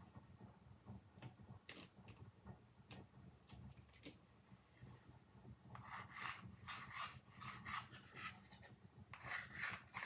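Faint handling sounds of a small wooden ornament: a few light taps, then from about six seconds in, runs of short scratchy rubbing strokes as gold paint is dabbed and rubbed around its paper-covered edge.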